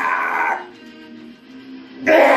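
A man's loud strained shout of effort, about half a second long at the start, as he forces a heavy power twister spring bar closed. Steady background music plays underneath.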